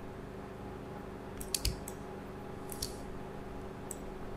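Short, sharp computer mouse clicks: a quick cluster of two or three about one and a half seconds in, then single clicks near the three-second mark and near the end, over a faint steady low hum.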